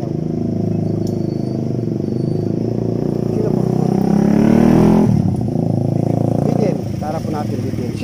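A vehicle engine running close by. It rises in pitch and grows louder to a peak about four to five seconds in, then drops away suddenly.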